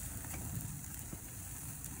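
Ribeye steaks and cauliflower sizzling over a flaming grill: a steady hiss with faint scattered crackles and a low rumble beneath.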